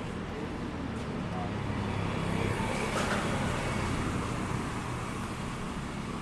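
Street traffic with a car passing close by, its tyre and engine noise swelling to a peak in the middle and fading again. A short click sounds about three seconds in.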